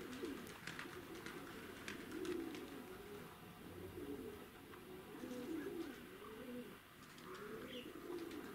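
Domestic pigeons cooing: a run of faint, low, warbling coos, one after another, with faint scattered clicks among them.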